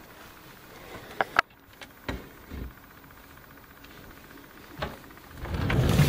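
Rummaging through dark wooden storage furniture: two sharp clicks a little after a second in and a couple of low knocks soon after, then near the end a low rumbling slide that swells as a piece of the furniture is pulled open.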